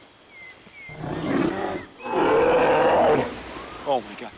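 A bear roaring twice: a shorter roar about a second in, then a louder, longer one.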